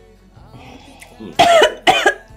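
A woman coughing, two loud coughs in quick succession in the second half, over quiet background music.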